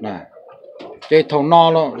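A man talking, with a brief pause in the first second that holds only a faint low murmur.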